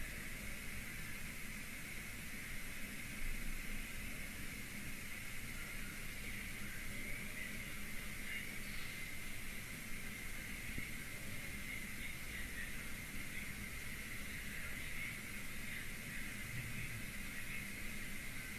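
Steady low background hiss with a faint low hum and no distinct sounds in it: the room and microphone noise of a quiet live stream.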